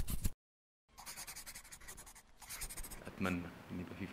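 Marker-pen scribbling sound effect for an animated logo: a quick run of scratchy strokes that stops just after the start. After a short gap, a fainter scratchy rubbing pass lasts about two seconds.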